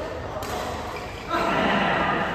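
A badminton racket hitting a shuttlecock once, a sharp smack about half a second in. From about a second and a half on come louder voices from the players.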